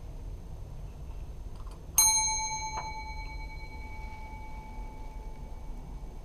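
Counter service bell struck once about two seconds in, giving a clear metallic ding that rings on and fades slowly over several seconds; a small knock follows just after the strike.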